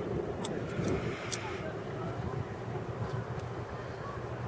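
Outdoor ambience: a steady low rumble with faint voices in the background and a few light clicks in the first second and a half.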